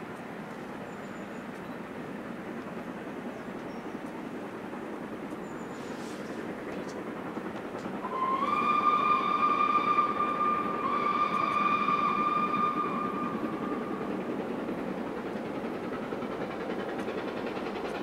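Two steam locomotives, an LNER B1 4-6-0 and an LMS Black Five 4-6-0, working hard up a steep climb, their exhaust a steady noise that slowly grows louder as they approach. About eight seconds in, a steam whistle sounds two long blasts, the second a little longer and fading away.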